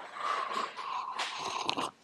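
Close slurping and breathing as someone sips a drink from a cup, mouth right by the microphone, with a few small wet clicks near the end.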